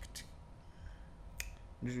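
Two faint, sharp clicks of fingers tapping a phone screen, a little over a second apart, followed near the end by a man starting to speak.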